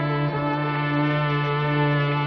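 Film score: a sustained orchestral chord with brass, held steady over a strong low note.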